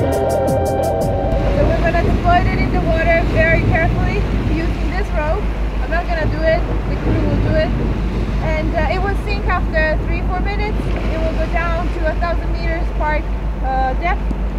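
A ship's engine throbbing steadily at an even pulse, with sea and deck noise and high wavering squeals over it. Background music cuts out about a second in.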